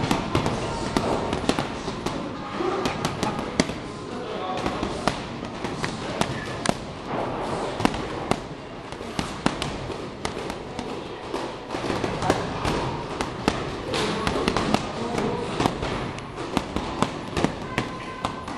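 Boxing gloves smacking heavy punching bags, a quick irregular stream of sharp hits from more than one bag, over a background of voices.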